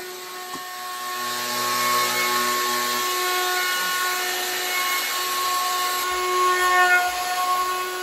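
Festool OF 1400 plunge router with a wide spoilboard surfacing bit, running steadily and cutting as it is pushed across a pine slab in a flattening jig: a constant motor whine over the noise of the cut, briefly louder about seven seconds in.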